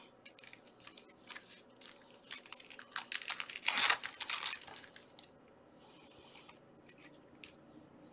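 Trading cards and a foil pack wrapper being handled by hand: light clicks and rustles of card stock, with a louder burst of rustling and scraping about three to four and a half seconds in, then a quieter lull.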